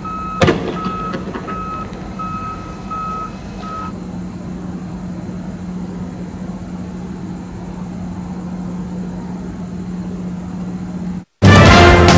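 An armoured vehicle's reversing alarm beeping about every 0.6 s over a steady low engine hum, with one sharp bang about half a second in. The beeping stops about four seconds in while the hum goes on; after a brief cut near the end, music starts.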